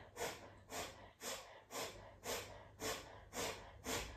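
Breath of fire: short, sharp breaths driven by a pumping action from the stomach, sniffed through the nose, evenly spaced at about two a second.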